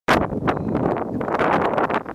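Wind buffeting the camera microphone: a loud, uneven rushing noise.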